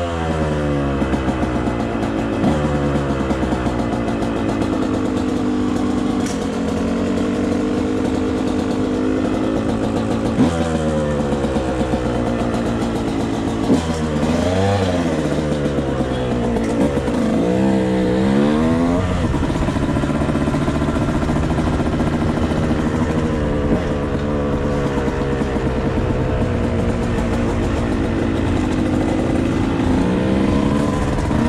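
Dirt bike engine running while riding, loud and steady, its pitch climbing and dropping with the throttle and gear changes. Quick revs go up and down about halfway through.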